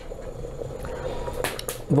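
Chicken-gizzard broth simmering in a metal pot on a wood-fired stove: a steady bubbling hiss, with a couple of sharp clicks about one and a half seconds in.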